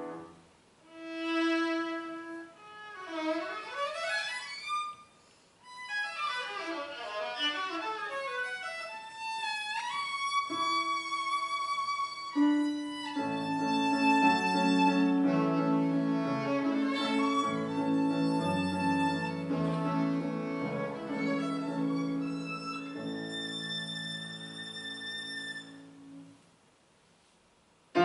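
Violin with piano accompaniment. The violin plays quick scale runs sweeping up and down, then held notes over fuller chords from about halfway. It stops a couple of seconds before the end, leaving near silence.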